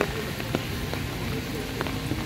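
Steady rain falling, with a few faint clicks.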